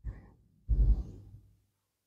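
A woman's short exhale close on the microphone, a second or so in, after a faint breath at the start.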